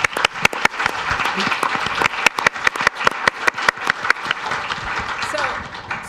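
A roomful of people applauding, many rapid hand claps that die away near the end.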